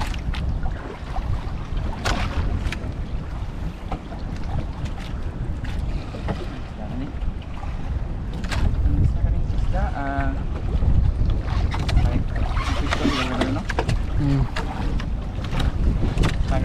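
Wind buffeting the microphone aboard a small boat at sea, a steady low rumble with a few sharp knocks.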